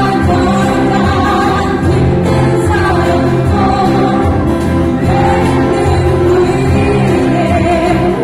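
A live band playing a song, with voices singing together over guitars and drums.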